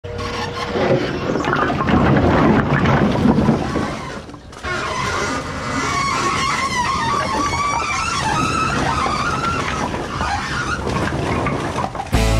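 Split firewood clattering and tumbling as a load slides out of a tipped dump trailer bed onto concrete. The logs knock and clatter continuously, with a brief lull a little after the midpoint.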